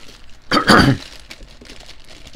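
A single short cough, about half a second in.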